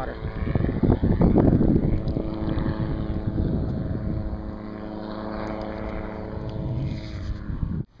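Water splashing and churning as a released seatrout and the camera go into the water, loudest in the first few seconds. A steady engine drone runs underneath, and the sound cuts off suddenly near the end.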